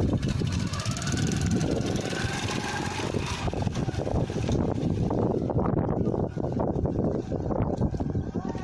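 A nearby vehicle engine running with a heavy low rumble, with a faint rising tone about a second in.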